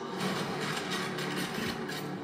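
Trailer sound effects played back in a room: a steady rushing noise over a low engine hum, a truck driving down a street.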